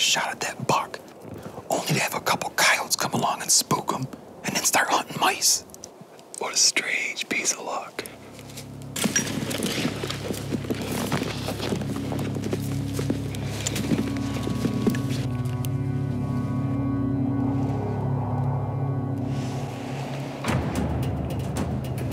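Whispered speech for the first several seconds, then background music of sustained low chords, with higher held notes joining in partway through.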